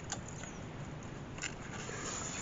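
Faint handling of a paper journal: a page being turned, with a couple of soft ticks, over low steady hiss.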